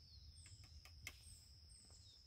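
Near silence with a few faint, short falling bird chirps.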